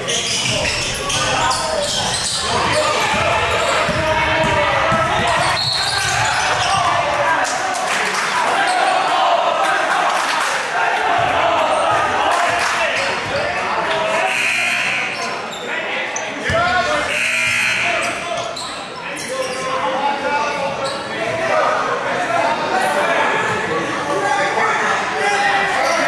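Echoing gym sound of a basketball game: voices of players and spectators talking and calling out, with a basketball bouncing on the hardwood floor.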